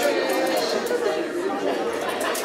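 Many guests talking at once: indistinct, overlapping chatter in a large hall.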